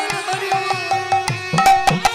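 Kirtan accompaniment played without singing: a hand drum plays quick strokes with bass notes that bend in pitch, over sustained melodic tones, with sharp clicks between the strokes.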